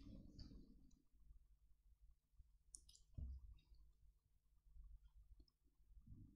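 Near silence: the room tone of a large hall, with faint scattered clicks and a soft low thump about three seconds in.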